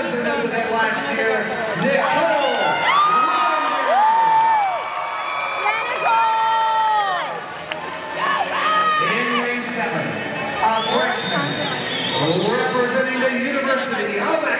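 Swim-meet crowd cheering: many voices shouting over one another, with long drawn-out yells and calls.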